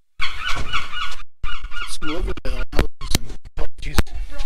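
Gulls calling in short, repeated calls during the first second or so, followed by a low voice and several sharp knocks.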